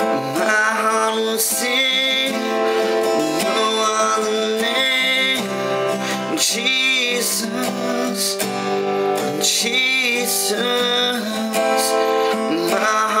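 Acoustic guitar strummed steadily, with a man's voice singing over it.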